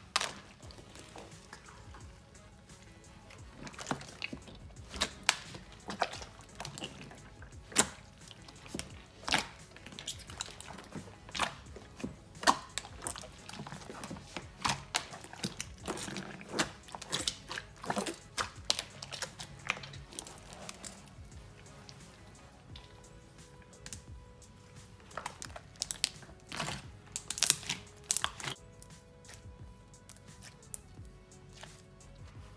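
Bare hands kneading and squeezing a large batch of white basic slime in a plastic tub while activator is worked in: irregular wet pops, clicks and squelches, several a second. Faint background music with held notes comes in about two-thirds of the way through.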